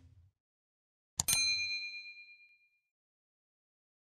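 Subscribe-and-bell animation sound effect: a click, then about a second in another click and a bright bell ding that rings out and fades over about a second and a half.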